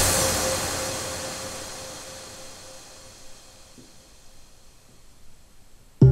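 Fading tail of electronic background music: a hiss-like wash of noise with a faint held tone, dying away slowly over several seconds to a faint level.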